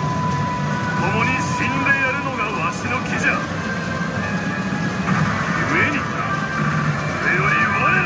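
A pachinko machine's speaker plays a male character's dramatic voice lines from a cutscene, with game effects, over the steady low din of a pachinko parlor.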